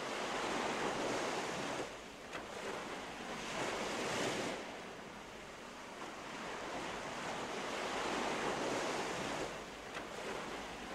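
Sea surf washing in, three slow surges that swell and fall back over a few seconds each.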